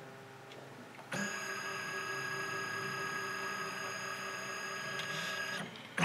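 Canon PIXMA multifunction scanner at work: about a second in, the scan carriage motor starts a steady whine as the scan head moves under the glass, and it stops shortly before the end.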